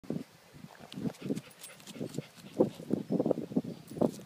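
Dachshund digging in dry dirt with its head down the hole, making a quick, irregular run of short low snorts and grunts, thickest and loudest over the last second and a half, with light scratching of dirt among them.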